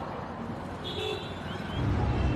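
Busy street traffic noise, steady, with a few faint short high-pitched chirps about a second in and a low rumble growing louder near the end.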